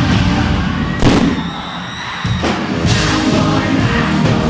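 Live pop song played loud over an outdoor concert PA, with a sharp bang about a second in, after which the music thins out briefly before the full beat comes back.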